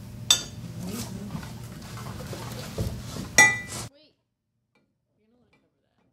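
Kitchen utensils and a glass measuring cup clinking as margarine is handled: a sharp clink about a third of a second in and a louder, ringing clink about three and a half seconds in, with soft handling noise between them. Shortly after the second clink the sound cuts to dead silence.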